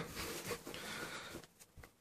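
Faint rustling of a padded parka's fabric as a hand smooths the sleeve flat, dying away to near silence about one and a half seconds in.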